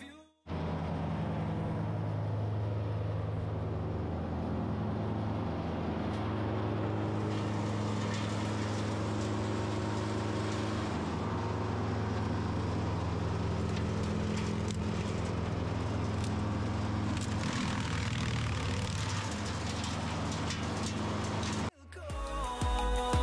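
Wood chipper's engine running steadily at a constant pitch while hedge branches are fed into it.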